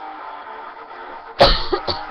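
A woman coughs hard twice, the first cough about one and a half seconds in and louder than the second, an allergy cough. Backing music plays quietly underneath.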